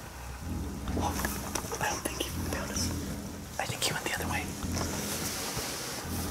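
Hushed whispering with light rustling and small clicks.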